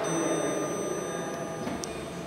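Old ASEA traction elevator car arriving at the floor: a steady running hum with a thin high whine, and a sharp click near the end as it comes to a stop.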